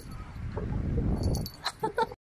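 Two Siamese cats tussling on a bed: a low, rough rustling and scuffing of the bedding close to the phone, swelling in the middle, then a few sharp clicks near the end.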